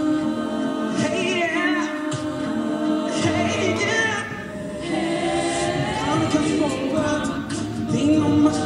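Mixed-voice college a cappella group singing into microphones: sustained chords in several voices with a moving melody over them, and sharp percussive hits about once a second.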